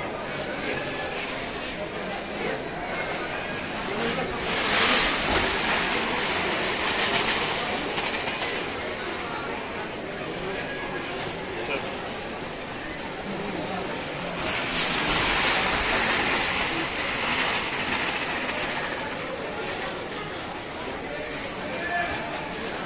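Rice being poured from bags into a huge steaming cooking cauldron (deg), two louder rushing, hissing surges of grain going in, about 5 and 15 seconds in, over a steady background noise.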